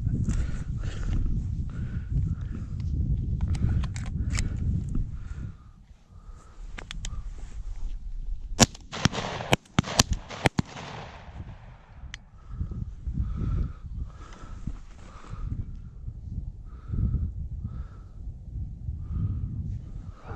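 Shotgun fired four times in quick succession about eight and a half to ten and a half seconds in, each shot sharp and loud, the spent shells being ejected between shots. Before the shots, wind rumbles on the microphone.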